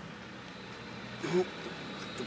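Faint, steady background noise with no distinct event, broken by a single spoken word about a second in.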